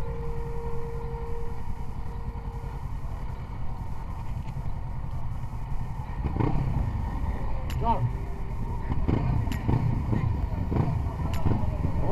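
A group of motorcycles running at walking pace, a steady low engine rumble. From about halfway through, people's voices call out over it, with a few sharp clicks.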